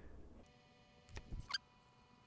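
Mostly quiet, with a few faint plastic clicks and a brief high squeak about a second and a half in, from handling a plastic oil jug and measuring cup.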